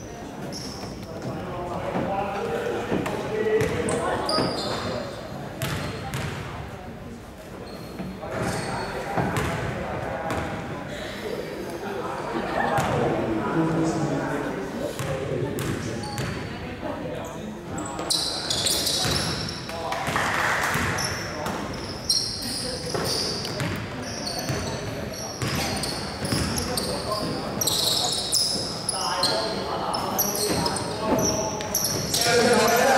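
A basketball being dribbled and bounced on a hardwood gym floor, with short sneaker squeaks among the thuds, thickest in the second half, all echoing in a large gym.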